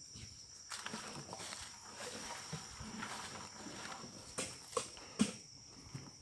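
Steady chirring of crickets, with rustling and scraping movement over it and a few sharp knocks about four to five seconds in, the last one the loudest.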